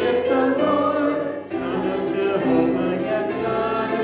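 Church congregation singing a hymn together from their hymnals, many voices holding long notes, with a brief break between phrases about one and a half seconds in.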